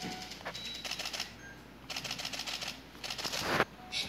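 Faint clicking and rustling in a quiet small room, with a short swell of hiss near the end.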